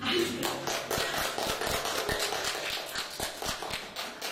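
Small audience clapping: a dense, uneven patter of individual hand claps.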